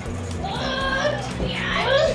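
Excited high-pitched voices shouting over background music, loudest near the end.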